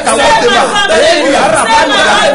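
A man and a woman praying aloud at the same time, their loud voices overlapping without pause.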